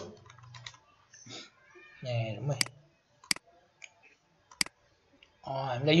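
A few sharp, spaced-out clicks of a computer keyboard and mouse, about four in all, with a short muttered voice about two seconds in.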